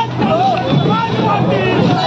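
A marching crowd shouting slogans, many voices calling at once and overlapping, over a steady low hum.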